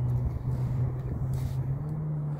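A motor engine running steadily with a low hum, stepping up slightly in pitch near the end, with a brief hiss about one and a half seconds in.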